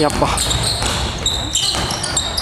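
Basketball being dribbled on a hardwood gym floor, with short high-pitched sneaker squeaks as players run and cut.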